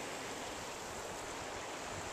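Small waves washing against black lava rocks along the shoreline, a steady, even hiss of water.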